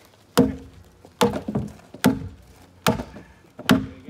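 Wide axe chopping into a log, five blows about a second apart, roughing out the notch where the two logs of a fence buck will fit together.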